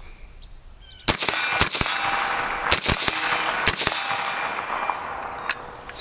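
A BCM 11.5-inch short-barreled AR-15 with a Surefire suppressor fired several times in quick succession, starting about a second in. Each shot is a sharp crack with a lingering tail.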